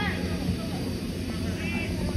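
Outdoor ambience at a football pitch: a steady low rumble of background noise with a few faint, distant calling voices.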